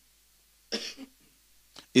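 A man's short throat-clearing cough, about a second in.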